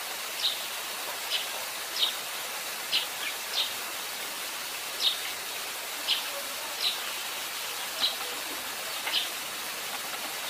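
Eurasian tree sparrow chirping: about ten short chirps, roughly one a second at uneven spacing, over a steady hiss.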